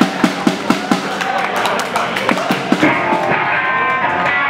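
Live drum kit played in an even beat of about four hits a second, with electric guitar notes ringing in near the end.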